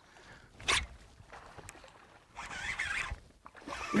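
A brief sharp swish about a second in as the fishing rod works a topwater frog lure, then just before the end a splash as a largemouth bass strikes the frog in the lily pads.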